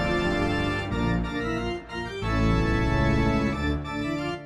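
Background music played on an organ: a run of held chords and notes that change every half second or so, with a short break a little under two seconds in.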